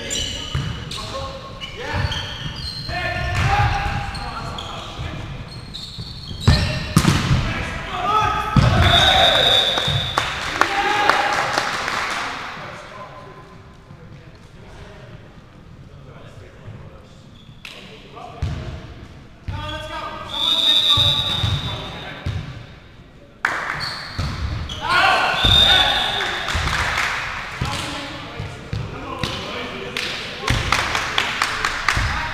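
Indoor volleyball play in a large sports hall: sharp ball hits and players' shouts ring around the room. Three short, shrill referee's whistle blasts come about a third of the way in, two-thirds in, and near the end, marking the serves and rally stoppages.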